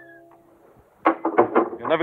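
A man's voice speaking, beginning about a second in after a brief lull.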